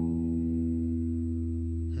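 Electric guitar through an amplifier, a low note left ringing with long, steady sustain and no new pick strokes, its higher overtones slowly fading.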